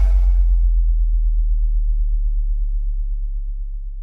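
A deep electronic sub-bass tone, the final note of a dembow mix, held on its own after the rest of the beat drops out and slowly fading away. The higher parts of the music die out within the first second.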